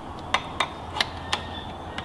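Metal mounting plate of a trike's carer control handle clinking against the frame bracket and bolt as it is lined up for fitting: four light metallic clicks with a faint ring.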